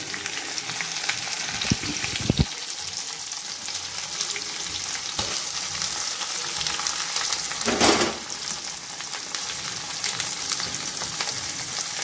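Chopped onions frying in hot mustard oil in a kadhai, a steady sizzling hiss. A couple of short knocks come about two seconds in, and the sizzle swells briefly louder near eight seconds.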